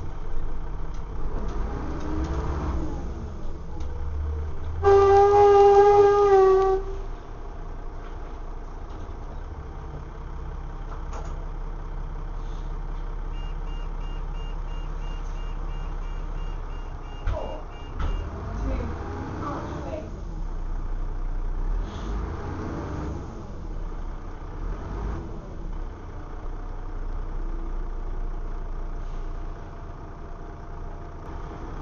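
Dennis Trident bus engine and transmission heard from inside the saloon, rumbling steadily with its pitch rising and falling through the gears as the bus pulls away and runs along. About five seconds in a vehicle horn sounds one loud two-second note, and later a quick run of high beeps repeats for a few seconds.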